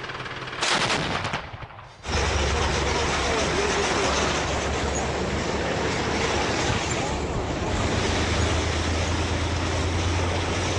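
A short burst of rapid heavy-gun fire from a truck-mounted twin anti-aircraft gun, about half a second in. Then, from about two seconds, the steady low rumble of tanks and tracked armoured vehicles driving, heard from on board one.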